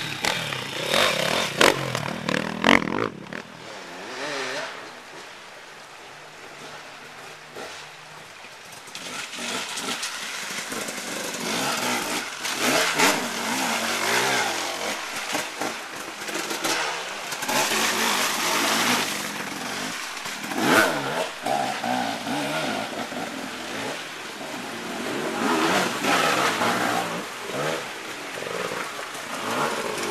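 Off-road enduro motorcycle engines revving on and off, the pitch rising and falling with the throttle. The sound is loud at first, drops quieter for a few seconds after a sudden change about three seconds in, then revs loudly again in bursts.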